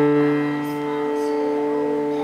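A chord on an upright piano, struck just before and held, ringing on steadily and easing slightly in level.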